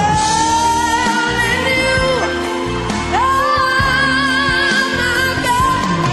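A young boy's solo singing voice, amplified through a microphone over backing music. He holds long notes with vibrato, lets one fall away about two seconds in, then swoops up into a high sustained note.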